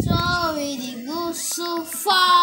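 A child's voice singing long, held notes that slide up and down in pitch.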